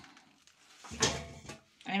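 A single kitchen knock about a second in, dying away within half a second.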